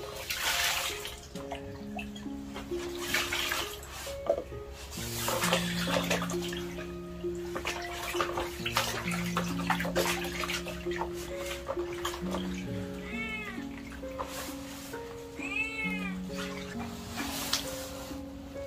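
Background music with a slow, stepwise melody, over intermittent splashing of water as raw meat is washed by hand in a plastic basin. Two short meow-like calls rise and fall, about two-thirds of the way through and again shortly after.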